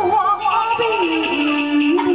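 A Taiwanese opera (koa-a-hi) singer singing through a handheld microphone and PA over amplified instrumental accompaniment. The voice slides between notes in the first part, then holds one long steady note near the end.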